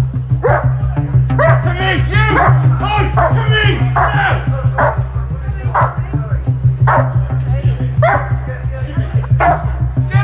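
A dog barking repeatedly, roughly once a second, over background music with a steady low pulsing beat.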